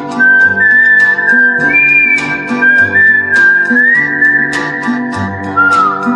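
Instrumental break of a late-1950s Italian pop recording with orchestra: a high, pure-toned whistled melody with sliding bends, over plucked guitar and bass and a steady percussion beat.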